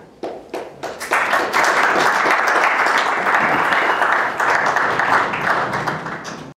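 Audience applauding: a few scattered claps that swell into full, steady applause about a second in.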